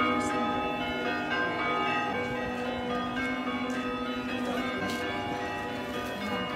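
Church bells ringing, several bells sounding together with overlapping tones that ring on.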